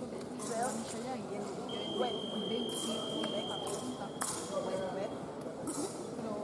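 A fencing scoring apparatus gives one steady, high electronic beep lasting about three and a half seconds, starting a couple of seconds in, over indistinct voices in a large hall.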